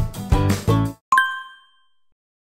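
The end of a short intro music jingle, which stops about a second in. A single bright chime follows, rings out and fades within about a second.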